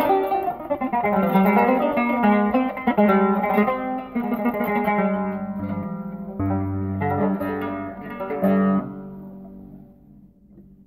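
Solo qanun improvising a taqsim in maqam Kurd, its strings plucked in quick runs of notes. After about six seconds it slows to a few stronger low notes, which ring and fade away near the end.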